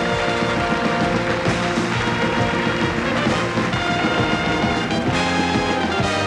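Band playing walk-on music with brass.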